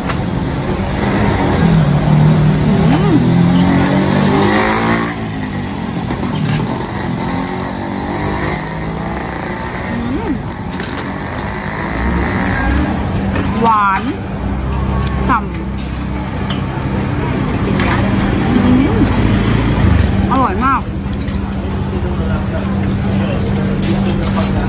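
Busy street ambience: motor-vehicle engine noise with a steady low hum throughout, and scattered voices of people nearby.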